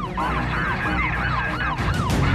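Siren sound effect in a fast yelp, its pitch rising and falling about three times a second, laid over music with steady low bass tones.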